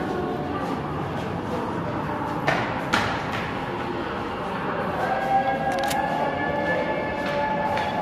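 Indistinct voices echoing in a tunnel, with two sharp clicks about two and a half and three seconds in.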